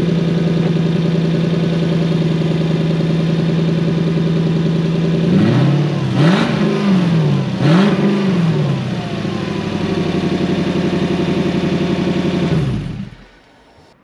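Toyota 3UZ-FE 4.3-litre V8, freshly started on a test stand, idling steadily, then revved twice, each blip rising and falling back to idle. It is switched off near the end and runs down to a stop.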